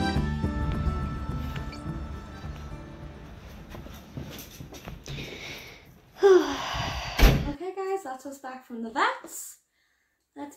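Background music fading out, then a front door opening with a short clatter and shutting with a single loud thud about seven seconds in.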